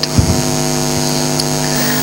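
Steady electrical mains hum in the microphone and sound system: an even stack of low, unchanging tones.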